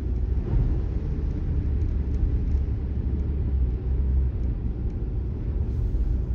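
Steady low rumble of a car being driven, heard from inside the cabin: engine and tyres on wet pavement.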